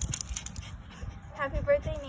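A small poodle whining in short pitched cries near the end, with a person's voice.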